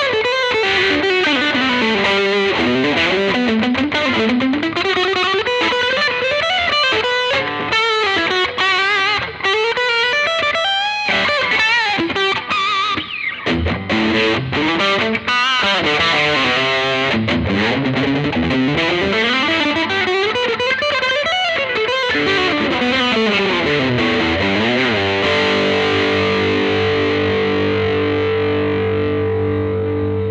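Kramer Focus VT-221S electric guitar played through a Peavey combo amp: fast lead runs climbing and falling up and down the neck, ending about 25 seconds in on a long held note that rings out.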